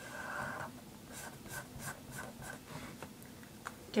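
A marker drawing on sketchbook paper: one longer scratchy stroke, then a run of short quick strokes, about three a second.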